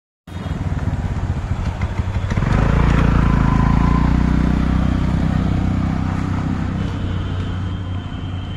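Motorcycle engine running close by as it passes, swelling loud about two and a half seconds in and fading toward the end, over street noise.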